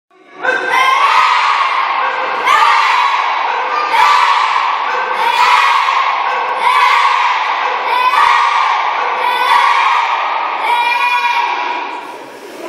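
A group of children shouting together in unison in time with their taekwondo punches, about eight shouts evenly spaced roughly every second and a half.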